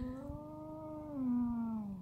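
A bull bellowing: one long, drawn-out call that drops a little in pitch about halfway through.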